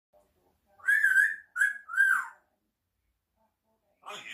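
African grey parrot giving a wolf whistle: a long wavering whistle just under a second in, then two shorter notes, the last falling away.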